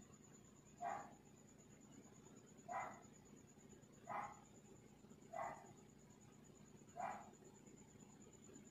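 A dog barking faintly, five single barks spaced about one to two seconds apart.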